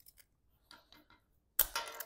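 Black plastic landscape edging being worked by hand: faint scattered clicks as its small stake tabs are snapped off, then a louder crackle of plastic near the end.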